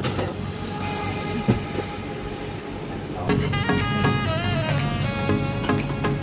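Background music over a steady low kitchen hum, with a brief hiss about a second in; the melody grows fuller a little after three seconds.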